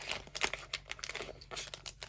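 Hands tearing open a sealed trading-card pack: a run of short, irregular crinkling and tearing noises as the wrapper and its seal are peeled back.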